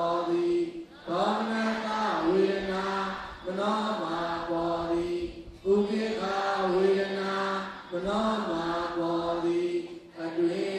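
A single male voice chanting, Buddhist devotional chant, in long held phrases of about two seconds each, broken by short pauses for breath.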